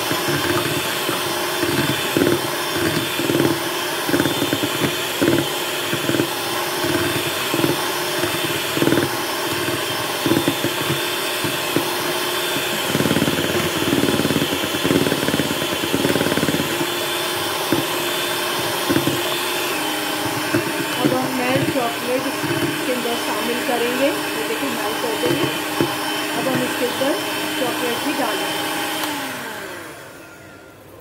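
Electric hand mixer running steadily, its beaters whipping a foamy batter in a plastic bowl. The motor switches off near the end.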